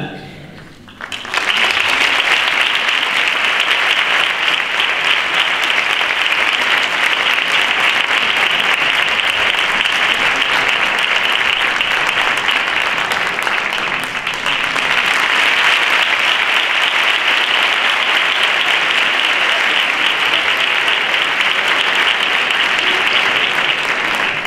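Theatre audience applauding: a long, steady round of clapping that starts about a second in, dips briefly around the middle, and carries on.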